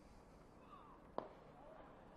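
A cricket bat striking the ball: a single sharp crack about a second in, over faint ground ambience.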